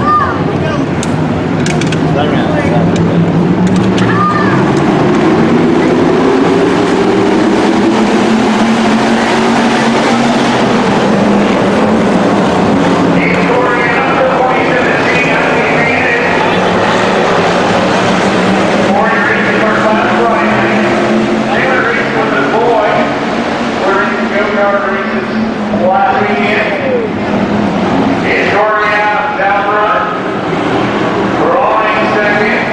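A pack of dirt-track hobby stock cars racing, their V8 engines revving up together in a rising drone over the first several seconds, then holding a loud, steady drone. Voices are heard over the engines from about halfway through.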